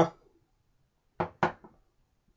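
Two short, sharp knocks about a quarter of a second apart, with a fainter third just after, as something is handled on a hard surface.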